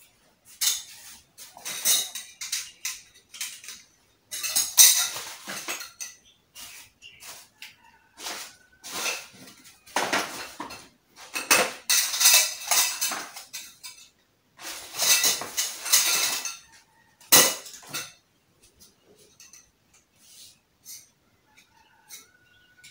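Metal wardrobe pipes clinking and rattling against each other as they are picked through and handled, in repeated bursts of clatter with one sharp knock, then only small ticks near the end.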